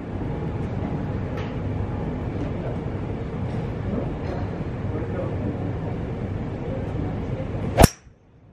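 A Majesty Prestigio X fairway wood strikes a teed golf ball: one sharp, loud crack of impact near the end, heard over a steady background hum with a few faint clicks.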